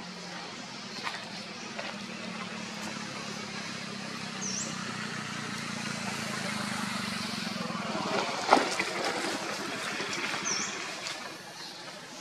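Outdoor ambience with a steady low hum that swells and then fades out about eight seconds in. There is one sharp snap just after the hum fades, and two short high chirps, one near the middle and one near the end.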